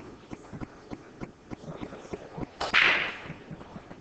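Pool break shot: a sharp crack about two and a half seconds in as the cue ball smashes into the ten-ball rack, then the balls clicking and clattering as they scatter across the table.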